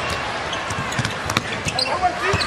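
A basketball being dribbled on a hardwood court, several sharp bounces over the steady noise of an arena crowd.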